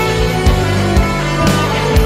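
Live acoustic, country-tinged rock band playing an instrumental passage: held chords over a bass line, with a drum hit about every half second.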